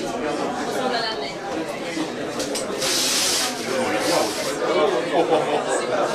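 Gift wrapping paper on a large box being torn open in two short rips, about three seconds in and again a second later, over people chatting.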